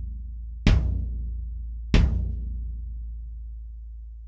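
Unmuffled bass drum head struck twice, about 1.3 s apart. Each hit is a low boom that rings on with long sustain and fades slowly, and the ring of an earlier hit is still dying away as it begins. The open, unmuffled head is sounded on its own to show the pitch it is tuned to.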